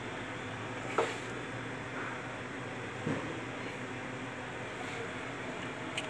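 Steady low background noise with a short knock about a second in and a fainter one about three seconds in.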